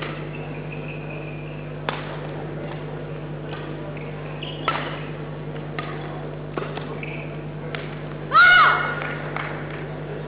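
Badminton rally: sharp racket strikes on the shuttlecock, about one every second or two, with shoe squeaks on the court floor. Near the end, the loudest sound is a brief high-pitched cry as the rally ends.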